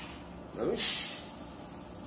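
Rice poured from a measuring cup into a cooking pot, a brief hiss of grains about a second in that fades within half a second.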